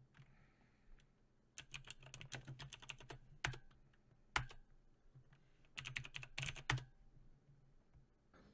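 Typing on a computer keyboard: two runs of quick keystrokes with a few single, louder key presses between them.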